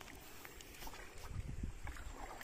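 Shallow river water splashing and sloshing as a person wades and handles a wet gill net, with small scattered splashes and drips. A low rumble swells in the second half.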